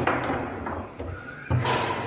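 Foosball table in play: sharp knocks of the ball struck by the figures and the rods banging, with a loud hit at the start and another about one and a half seconds in.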